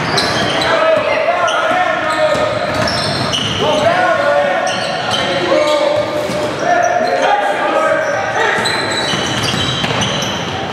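Live youth basketball game in a large gym: a basketball bouncing on the hardwood court under a steady mix of indistinct voices from players and spectators, echoing in the hall.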